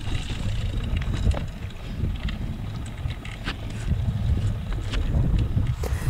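Wind buffeting the microphone of a camera on a moving road bike, with its tyres rolling over a dry dirt road. A few short clicks and rattles come from gravel and the bike.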